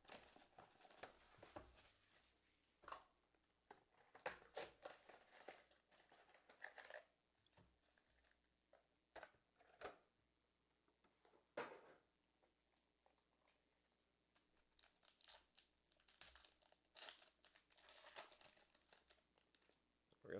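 Faint, intermittent crinkling and tearing of trading-card pack wrappers and box packaging as a box of 2022 Illusions NFL cards is unpacked and a pack is torn open, in scattered clusters with a quieter gap past the middle.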